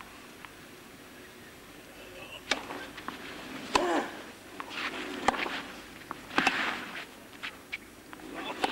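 Crowd and court sounds at a clay-court tennis match between points. Scattered spectator voices and several sharp knocks start about two and a half seconds in, after a quiet start.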